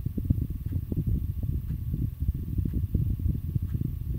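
Long roll of thunder: a low, rolling rumble.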